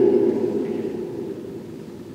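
The echo of a man's voice dying away in a large stone church, fading steadily over about two seconds to faint room tone.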